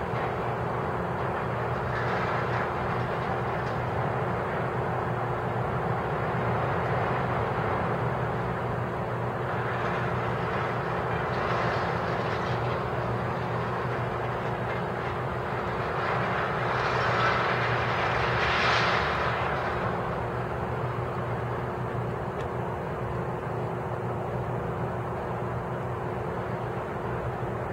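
Steady running of a Liebherr material handler's diesel engine with a constant low hum, swelling louder a few times, most of all about seventeen to nineteen seconds in.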